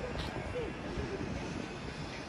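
Steady outdoor city background noise with faint voices mixed in.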